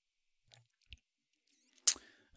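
Near silence with a couple of faint small clicks, then one short, sharp click near the end.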